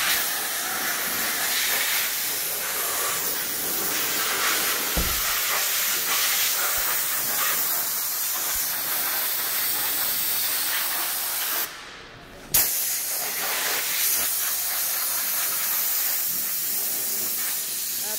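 A steady, fairly loud hiss, with a single dull thump about five seconds in. The hiss drops away for about a second near two-thirds of the way through and returns with a sharp click.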